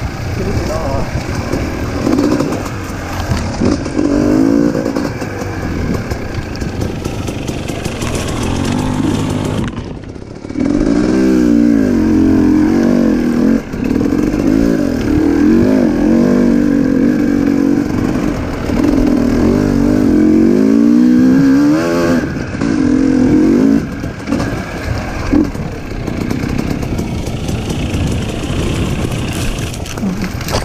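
Dirt bike engine revving up and down over and over as the bike is ridden along a trail, its pitch rising and falling with the throttle. It briefly drops off the throttle about a third of the way in, then picks up again.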